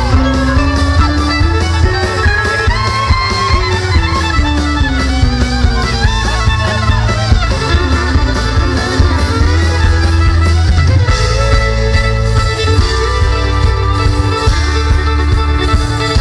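Live country band playing an instrumental passage, with fiddle, acoustic guitar, drums and a heavy bass line, heard loud from the crowd. The melody slides between notes and holds steady tones over a constant low end.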